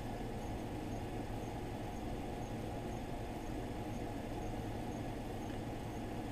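Air conditioner and fan running: a steady rush of moving air over a low hum, with a faint high tick repeating about twice a second.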